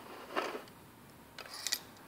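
A few faint sharp clicks from a motor-effect demonstration rig. A push-button switch closes the circuit, and a metal rod is driven along its two metal rails by the force from the magnet.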